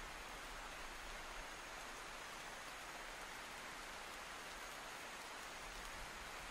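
Tropical rainforest downpour: heavy rain falling steadily, heard as an even, soft hiss.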